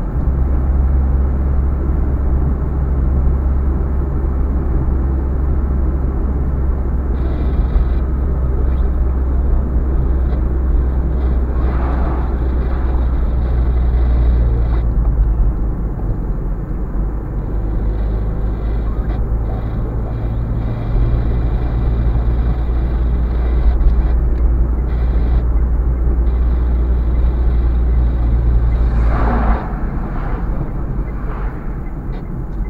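Road noise inside a moving car: a steady low engine and tyre drone. Near the end a lorry passes the other way with a brief rushing swell.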